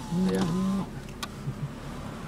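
A man says "yeah". Then comes a steady low hum of a car cabin, with a single faint click about a second in.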